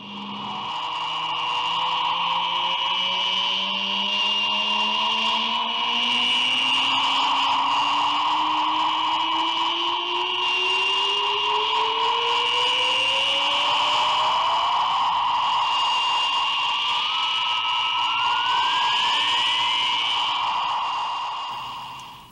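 Electronic science-fiction flying-saucer sound effect. Two steady high whines are held while a lower tone glides slowly upward through nearly the whole stretch, then everything fades out near the end.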